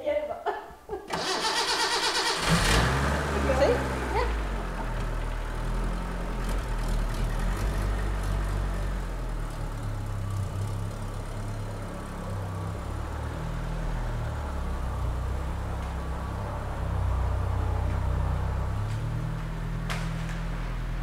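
A 1975 Honda Civic 1200's water-cooled four-cylinder engine is cranked by the starter and catches after about a second and a half. It then runs steadily at idle, getting a little louder near the end as the car pulls slowly away.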